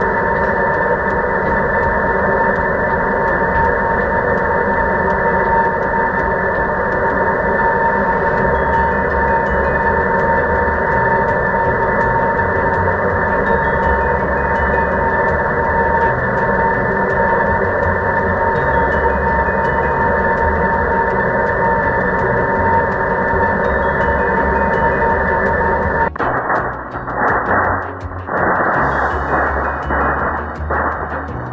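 Electrodynamic vibration shaker driving a beam with random vibration: a loud, steady rushing noise with a steady tone running through it. It cuts off abruptly about 26 seconds in.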